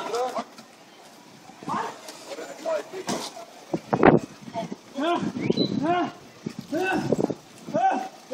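A drunk man crying and wailing, letting out a string of short cries that rise and fall in pitch from about five seconds in, with sharper shouts before that.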